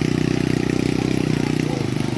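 An engine idling steadily, with an even, rapid pulse, its note shifting slightly near the end.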